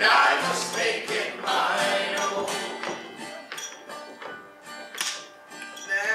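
Live folk song: several voices singing together over acoustic guitar, dying away about halfway through, then a few scattered light taps.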